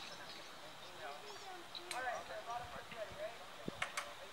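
Faint, distant voices calling, with two sharp clicks, one about halfway through and one near the end.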